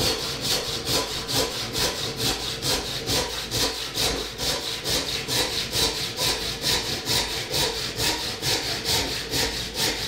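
Backsaw cutting a kerf down into the end of a wooden block held in a vise, with quick, even strokes at about four a second.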